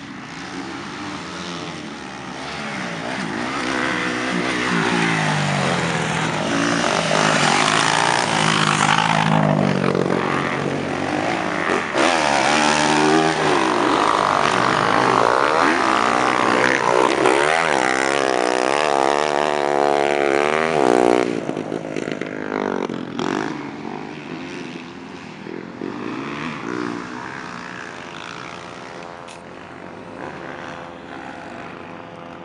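Motocross dirt bikes riding hard past on a dirt track, their engines revving up and down through the gears. The sound builds over the first few seconds, stays loud through the middle, then fades away after about two-thirds of the way in.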